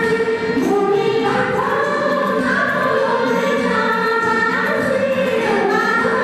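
Women singing together into microphones: a Nepali lok dohori folk song, several voices at once, with long held notes.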